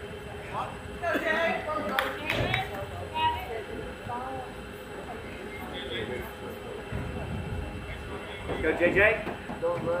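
Voices of spectators and players calling out and chattering at a distance, the words unclear, loudest about a second in and again near the end, over a low rumble. A single sharp click sounds about two seconds in.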